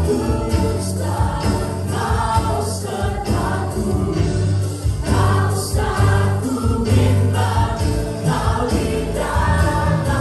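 Live worship band: several amplified singers singing an Indonesian worship song together over keyboard and a strong bass line, with a steady jingling percussion beat.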